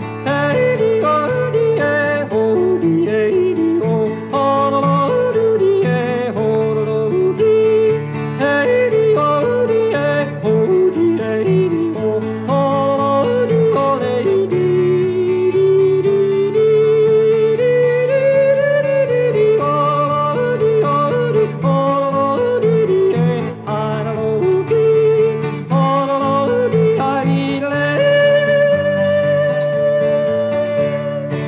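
A man yodeling a wordless refrain, his voice flipping and leaping between low and high notes over a steady country instrumental backing. Near the end he settles on one long held high note.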